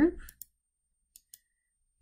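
Two faint computer mouse clicks in quick succession about a second in.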